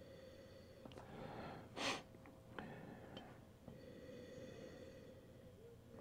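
Faint breathing at the rim of a wine glass, with one short sniff about two seconds in, as red wine is nosed. A faint steady hum runs underneath.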